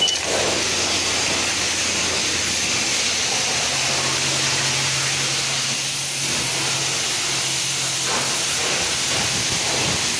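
High-pressure rinse wand at a self-service car wash spraying water onto the side of a pickup truck: a steady loud hiss of spray. A short beep sounds at the very start, and a low steady hum joins in the middle.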